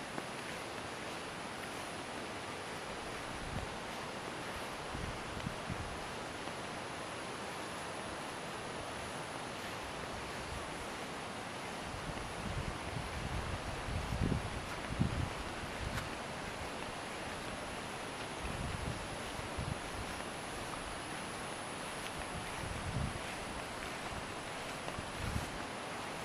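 Steady outdoor wind noise with low gusts buffeting the microphone now and then, the strongest about fourteen to fifteen seconds in.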